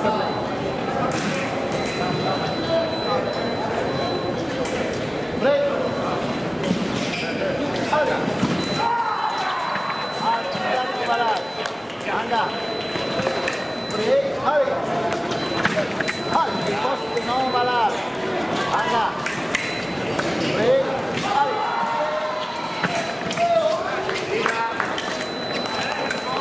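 Many voices talking in a large, echoing hall, mixed with sharp taps and stamps from foil fencers' footwork and blade contact on the piste. A faint steady high tone runs through most of it.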